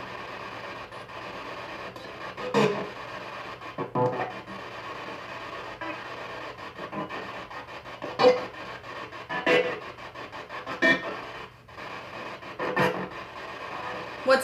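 P-SB7 spirit box sweeping radio frequencies in reverse through an external speaker: steady static broken by short, irregular snatches of broadcast sound every second or few.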